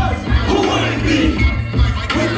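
Loud hip-hop beat through a concert PA with a steady pulsing bass, and a crowd shouting along over it.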